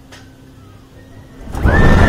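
Kingda Ka's hydraulic launch firing about one and a half seconds in: after a quiet wait with a faint steady hum, a sudden loud rush of wind and rattling train noise as the coaster shoots forward.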